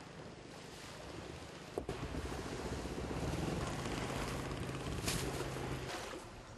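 Seashore ambience: wind on the microphone and small waves lapping, with a low steady engine hum from a boat on the water that comes up after about two seconds. A single click near two seconds in and a short gust near the end.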